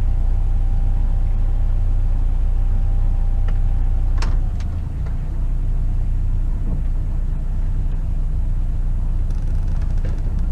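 Sailboat's engine running steadily in gear, pushing the boat against the spring line to hold it alongside the dock. A click about four seconds in, after which the engine hum is slightly quieter.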